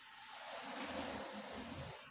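A man's long breathy exhale through the mouth while he lifts a barbell through a sumo lift repetition.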